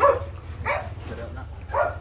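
A dog barking three times, short barks spaced out over a couple of seconds, over a steady low hum.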